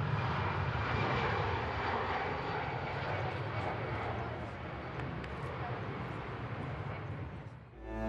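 Twin-engine jet airliner taking off, its jet engines at takeoff power making a steady rushing noise that fades away near the end.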